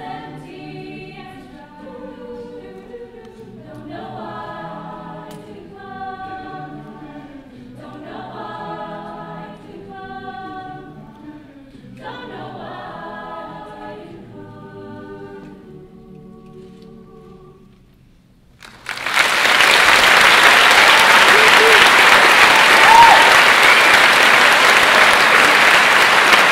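Mixed-voice chamber choir singing a cappella, its final phrases swelling and falling and then dying away softly. About nineteen seconds in, loud applause breaks out and carries on.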